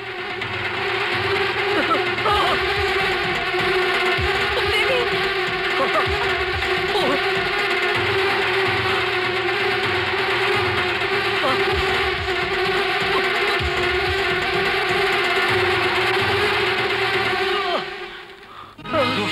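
A swarm of honeybees buzzing, a dense steady drone that cuts off suddenly at the end.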